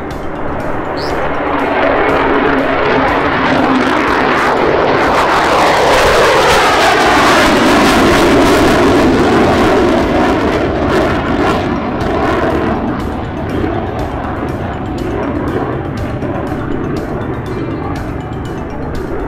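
Lockheed Martin F-35 fighter jet taking off and climbing away: the engine roar builds over the first few seconds, peaks about halfway through with a falling pitch as it passes, then slowly fades. Music with a steady beat plays underneath.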